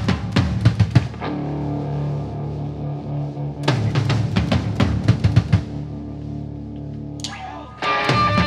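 Live rock band: two short bursts of drum-kit hits (kick, snare and cymbals), each followed by a held low note from the bass and guitars ringing out. Near the end the full band crashes back in together with distorted guitar.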